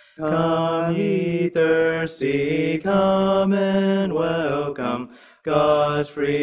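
Two men singing a hymn together without accompaniment, in long held notes broken by short pauses for breath between phrases.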